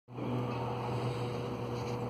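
A steady low hum over an even background hiss, with no distinct events.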